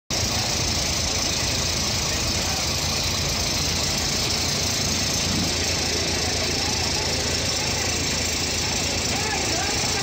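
Wheel loader's diesel engine running steadily, with voices of people talking in the background.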